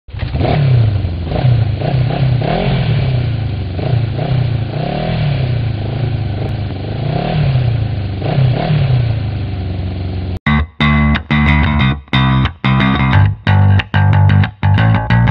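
Motorcycle engine revved over and over, its pitch rising and falling with each throttle blip. About ten seconds in it cuts off suddenly and rock guitar music comes in, in sharp stop-start stabs.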